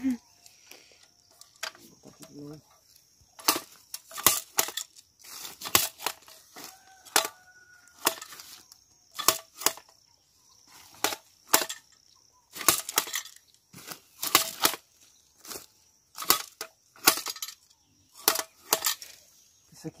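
Hand jab planter being stabbed into damp soil and worked stroke after stroke, each stroke a sharp clack of its jaws and seed mechanism, a stroke or two every second or so. A steady high insect buzz runs underneath.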